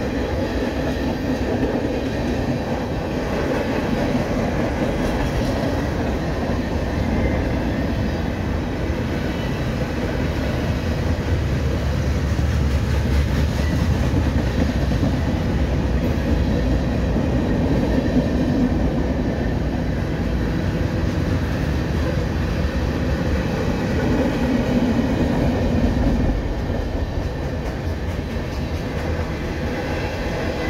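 Tank cars and covered hoppers of a mixed freight train rolling past close by: steel wheels running on the rails, loud and steady throughout.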